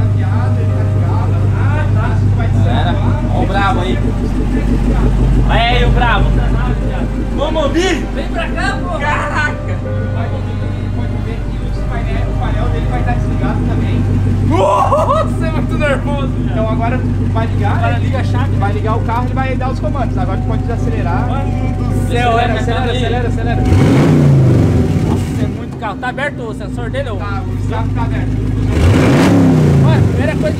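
A Chevrolet Camaro SS's 6.2-litre V8, started by remote start, idling steadily. It is revved twice, about six seconds before the end and again at the very end, each rev falling back to idle.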